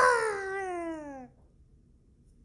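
A young child's voice imitating a dinosaur cry: one long high call that falls steadily in pitch and fades out about a second and a half in.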